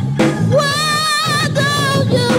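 Church choir singing, a lead voice sliding up and then holding long notes with vibrato, over instrumental accompaniment.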